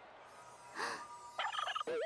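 A short gasp from the watching crowd, then, from about a second and a half in, a fast rattling warble like a turkey's gobble: a comic cartoon sound effect.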